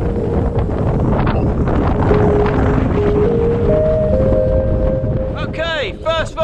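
Wind buffeting the microphone of a camera on a moving bicycle, a loud, steady rush, under background music of held notes that step from pitch to pitch.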